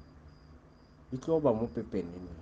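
A faint, thin high-pitched trill that runs on and off in the background, like a chirping insect, with a voice speaking from about a second in.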